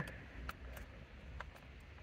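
A few faint plastic clicks as a steering wheel wiring connector is unplugged by hand.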